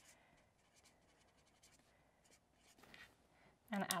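Tip of a Crayola Take Note erasable highlighter scratching on planner paper in a few faint short strokes, erasing white heart lines into a pink highlighted patch.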